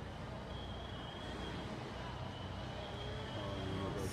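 Steady low hum of fire engines running, with a thin high whine that comes and goes.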